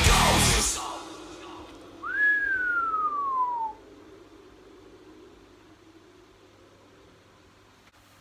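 Thrash metal music cuts off just under a second in. Then comes a single whistled note that rises sharply and slides steadily down in pitch for about a second and a half.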